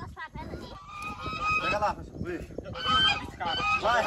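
A person's voice letting out two drawn-out, high-pitched cries without clear words, the pitch bending up and down, the second one louder.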